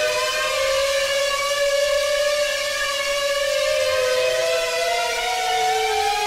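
Two held Serum synth notes played from an Artiphon Instrument 1 MPE controller, each with its own pitch bend: they glide together into near unison, then slide apart in opposite directions, one rising and one falling, over the last couple of seconds.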